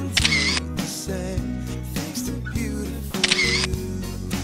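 Two camera shutter clicks about three seconds apart, over background music.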